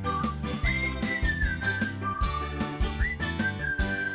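The cartoon's end-credits theme tune: a whistled melody sliding between notes over a steady bass line and regular percussion hits.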